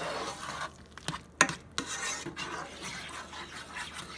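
Black plastic spoon stirring diced vegetables through a thick roux gravy in a frying pan, scraping along the pan, with a few sharp knocks against it, the loudest about a second and a half in.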